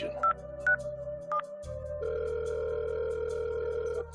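Phone call being placed: three short keypad beeps in the first second and a half, then a steady ringing tone from halfway through as the call rings through, over soft background music.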